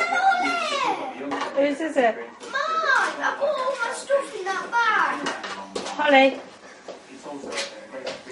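Young children shouting and squealing in play: a string of high-pitched calls that swoop up and down, with no clear words.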